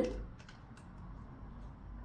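Quiet room tone with a few faint clicks in the first second from the cap of a small plastic spray bottle being taken off.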